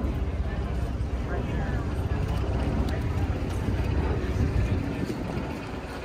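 Wind rumbling unevenly on the microphone, with people's voices in the background.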